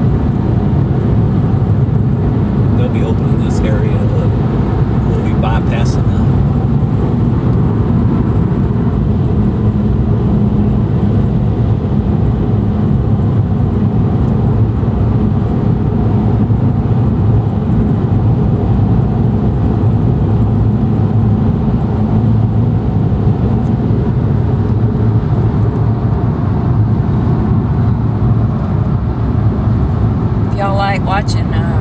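Steady cabin noise of a Chevrolet Spark cruising at highway speed: an even, low road-and-engine rumble that holds constant throughout.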